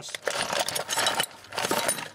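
Hands rummaging through a box of small electrical parts, cables and plastic bags: a quick run of clinks, knocks and rattles of hard plastic and metal.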